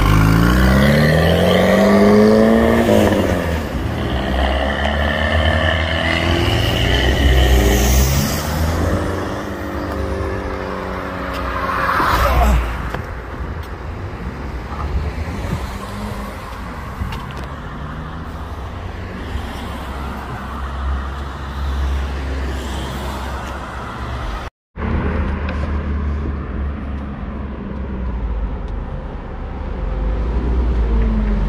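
Pontiac Fiero-based Ferrari F355 replica accelerating away, its engine revving up through the gears with the pitch climbing, dropping at each shift and climbing again. After about ten seconds it fades into passing street traffic.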